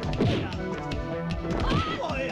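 Trailer music over film fight sound effects: blows landing as one fighter strikes and throws another.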